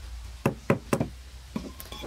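Wooden mallet striking a chisel to cut a notch into a squared wooden beam: three sharp knocks about a quarter second apart, then two lighter ones near the end.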